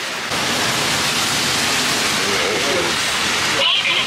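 Heavy rain pouring down onto pavement, a loud steady hiss.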